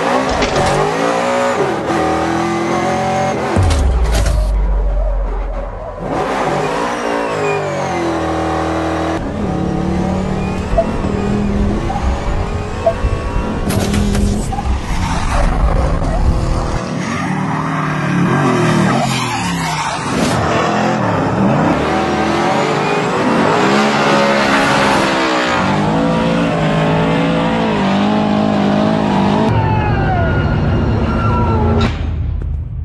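2024 Ford Mustang drifting: the engine revs hard, its pitch rising and falling again and again with the throttle, while the tyres squeal and slide.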